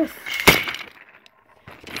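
Handling noise: one sharp snap about half a second in, followed by light crackling and a few faint clicks.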